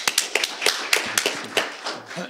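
A small group of people clapping their hands in applause, the separate claps distinct, thinning out near the end.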